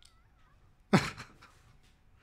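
A man's short, loud laugh close to the microphone, about halfway through, dropping in pitch, followed by a few faint clicks.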